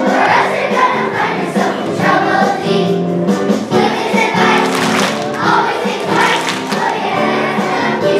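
A children's choir singing a song together, continuously and at a steady loudness.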